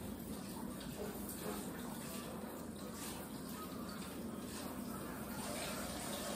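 Kitchen tap running steadily into the sink.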